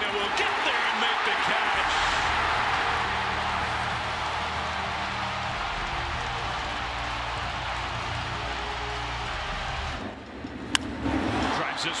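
Stadium crowd cheering and applauding a catch in the outfield, swelling about two seconds in and slowly fading, with a low steady hum underneath. Near the end the crowd sound drops away and a single sharp crack of a bat hitting a pitch is heard.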